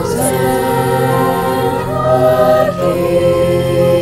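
A choir singing a Christmas carol in long held notes, over a steady low accompaniment.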